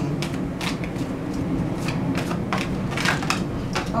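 A deck of tarot cards shuffled by hand: an irregular, quick run of card snaps and slaps.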